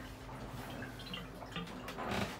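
Quiet sailboat cabin ambience: a low steady hum with a few faint small clicks and ticks, in the small enclosed head.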